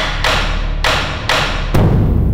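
Dramatic background score: a steady low bass drone under a run of loud percussive hits, about one every half second.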